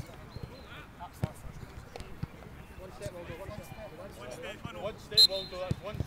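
A football being dribbled on grass, with a few dull knocks of foot on ball, under men's voices calling across the pitch. A brief loud, sharp sound comes about five seconds in.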